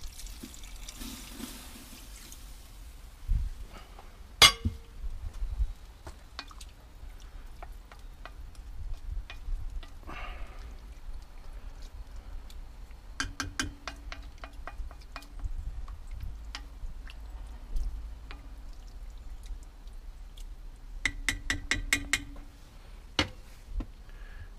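Water poured from a glass jug into a Dutch oven of goulash for the first couple of seconds. Then scattered clinks and knocks follow, with two short runs of rapid clicking, one near the middle and one near the end.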